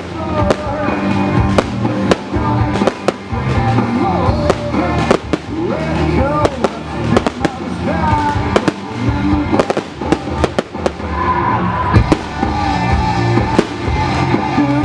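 Firework shells bursting in quick, irregular succession, a sharp crack every fraction of a second. A song with a singer plays alongside.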